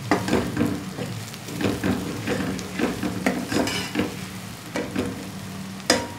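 Sliced onions sizzling in hot oil in a metal pot while a slotted metal spatula stirs and scrapes them in repeated short strokes, browning them toward golden brown. A sharp knock of the spatula against the pot comes just before the end.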